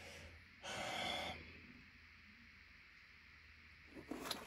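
A single short breath, a sharp intake or exhale close to the microphone, lasting under a second about half a second in; after it only faint room tone with a low hum.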